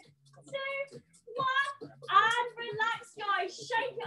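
A high voice in short sung phrases whose pitch glides up and down, with gaps between phrases and a low hum coming and going underneath.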